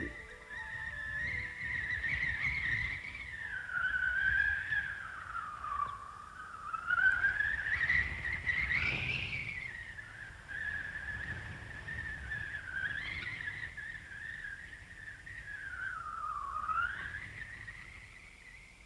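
Soundtrack music: a single whistle-like synthesizer tone that glides slowly up and down, over a faint low rumble.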